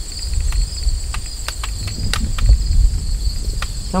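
Steady chorus of crickets chirping, with a scatter of small clicks and a low rumble on the microphone that swells around the middle.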